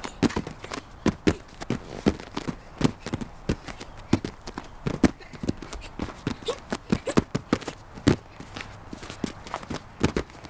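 Bare feet landing with soft thuds on a padded folding gymnastics mat as three children do repeated two-footed jumps, the landings out of step with each other, several a second.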